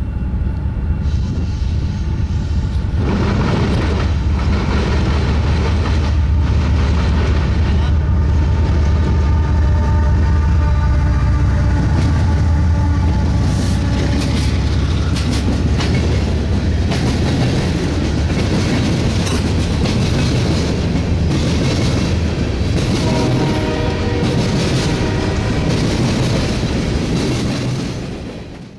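A BNSF diesel freight locomotive passing close by, its engine rumbling loudest in the first half, followed by a string of loaded-looking hopper cars rolling past with the clatter of wheels on rail joints.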